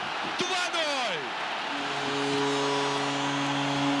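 Hockey arena goal signal over the PA after a home goal: a steady, held chord of several tones starting a little before halfway, over crowd noise.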